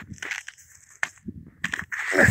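Footsteps crunching on snow, several irregular steps.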